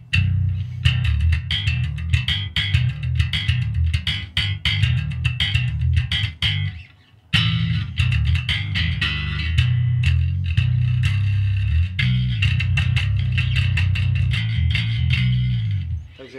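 Electric bass with a Nordstrand single-coil and humbucker pickup and active electronics, played as a fast riff of deep notes with sharp attacks and a bright edge. The playing stops briefly about seven seconds in, then carries on.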